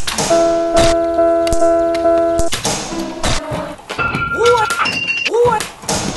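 A beat built from recorded everyday school sounds: sharp knocks and clicks, then a held chord of steady tones for about two seconds, then several short pitched swoops that rise and fall, repeated in the second half.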